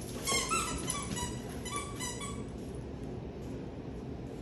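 A dog whining in play: a quick run of short, high-pitched whimpers over about two seconds, then it stops.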